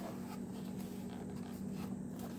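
Light rubbing and scraping of a cardboard-backed plastic blister package being handled, over a steady low hum.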